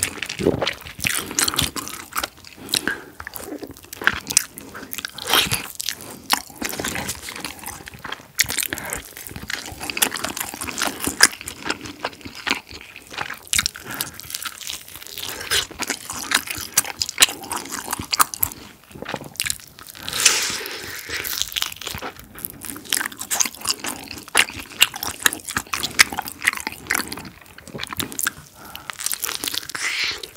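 Close-miked biting, crunching and chewing of sauce-glazed Korean fried chicken (yangnyeom chicken), a dense run of crisp crunches from the fried batter going on without a break.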